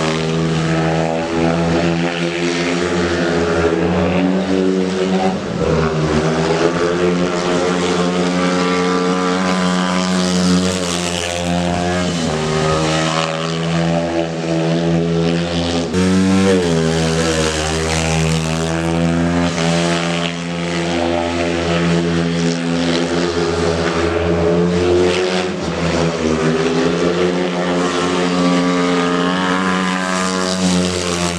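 Speedway bike's single-cylinder 500 cc methanol engine running hard as it laps the shale track. The engine note is loud and steady, dipping in pitch and climbing again three times.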